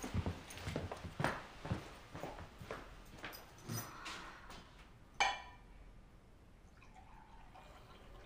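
Footsteps on a hard floor as a man walks across a room, a run of irregular soft knocks. About five seconds in, a single ringing clink of glassware being set down in a kitchen.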